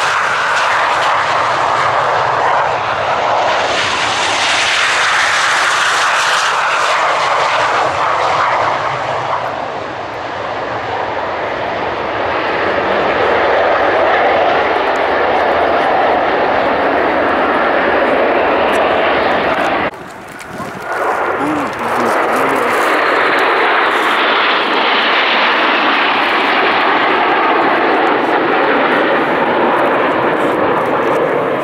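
BAE Hawk T1 jets of the Red Arrows taking off in formation, their Adour turbofans running at full power in loud, continuous jet noise that rises and falls in pitch as the aircraft roll past and climb away. The noise dips briefly about two-thirds of the way through.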